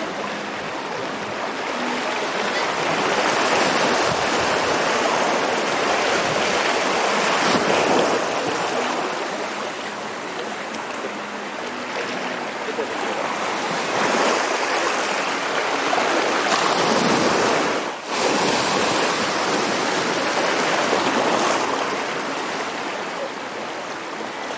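Small waves washing over sandy shallows at the water's edge, a continuous rush of water that swells and eases every few seconds.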